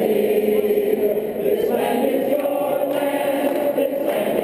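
A crowd singing together, many voices holding long notes.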